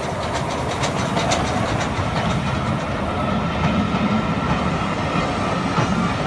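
Steam train hauled by LBSC A1X Terrier tank engine 32670 passing close by: wheels clicking over the rail joints with a steady rumble as the carriages roll past. The sharp clicks come thickest in the first second and a half, and the rumble grows louder.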